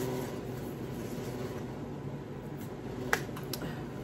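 Safety seal on a perfume box being broken: one sharp snap about three seconds in, followed by a few faint ticks.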